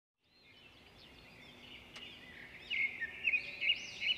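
Birds chirping and singing, fading in and growing louder, with a few sharper calls in the second half.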